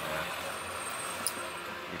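Steady road and tyre noise inside the cabin of a Jaguar I-PACE electric robotaxi on the move, with a faint high whine through most of it and a light tick about a second in.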